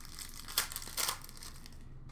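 Thin plastic crinkling as trading cards are handled, in short bursts at the start, about half a second in and about a second in.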